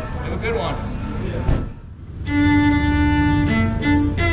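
Cello bowed solo, starting about two seconds in with long held notes. Before it, indistinct voices.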